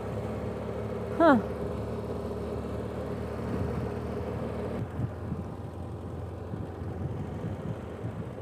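BMW F800GS parallel-twin motorcycle engine running steadily at low road speed, its note changing about five seconds in.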